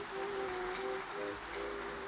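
Background music: a slow melody of held notes over an even rushing noise.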